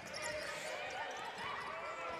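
Basketball being dribbled on a hardwood court, faint, over the low murmur of an arena crowd.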